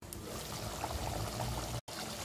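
Chicken curry boiling in a covered pot, a steady watery bubbling under a glass lid, with a brief dropout near the end.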